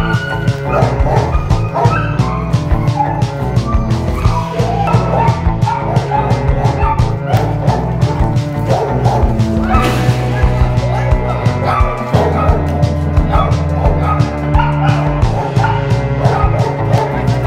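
Background music with a steady beat, with a dog's yips and barks over it.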